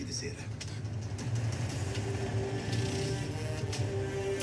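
Film trailer soundtrack: a brief line of male dialogue at the start, then a heavy low rumble with orchestral music swelling in, held notes entering about halfway and a few sharp hits near the end.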